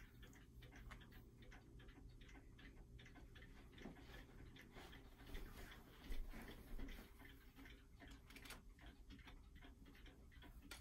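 A clock ticking faintly over quiet room tone.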